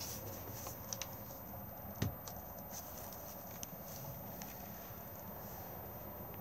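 Quiet room tone inside a caravan with a few faint clicks and one soft knock about two seconds in, from someone moving about and handling the camera.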